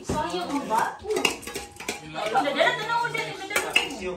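Metal clinks and scrapes of a round metal bowl being scraped out with a utensil as shaved ice is emptied into a plastic bowl, several short clicks among them, with people talking.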